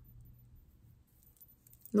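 Near silence: quiet room tone with a faint steady low hum.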